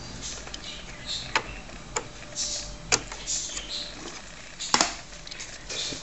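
Hands handling plastic computer hardware and its cables: four sharp clicks and knocks spread over several seconds, the loudest near the end, with rustling between them.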